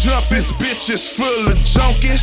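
Hip hop beat with a heavy bass and quick, even hi-hats, with rapped vocals over it. The bass drops out for about a second in the middle, then comes back.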